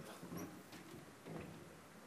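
Quiet hall room tone with no speech, broken by a few faint, brief sounds about half a second and a second and a half in.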